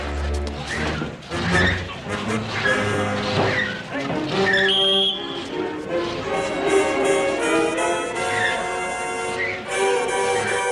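Brass-led orchestral film score, with a few short crashes and knocks mixed in during the first half.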